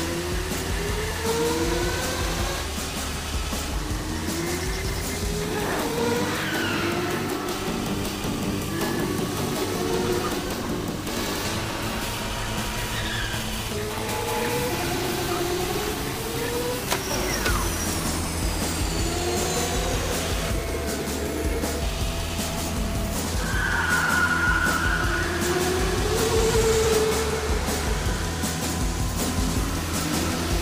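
Go-kart motors running and revving in repeated rising whines, mixed with background music.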